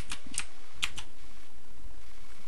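Four quick computer keyboard keystrokes within about a second, then only a steady hiss.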